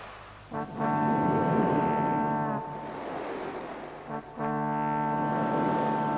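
Two long, low horn blasts, each about two seconds, the pitch sagging as each one ends. Between and under them a rushing noise swells and fades.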